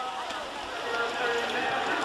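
Steady open-air background noise with faint, indistinct voices.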